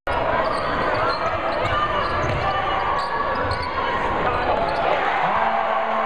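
Live basketball game sound in a gym: a crowd of voices with a basketball bouncing on the hardwood court. A steady low tone comes in near the end.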